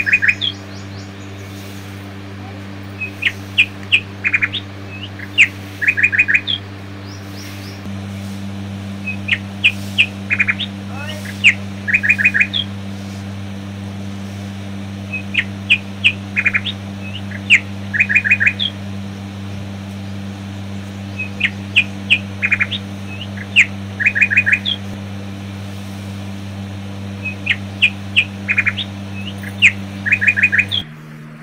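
Small birds chirping in short clusters of quick high notes. The same run of chirps comes back about every six seconds, like a looped recording, over a steady low hum.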